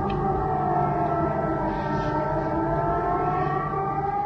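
Air-raid siren wailing, several tones sliding slowly, the strongest falling and then rising again: an alert sounding during a drone attack.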